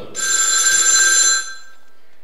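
Telephone ring sound effect: a single trilling ring lasting just over a second.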